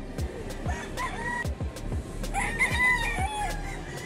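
A rooster crowing: a short call about a second in, then a longer crow, the loudest sound, in the second half. Background music with a steady drum beat plays underneath.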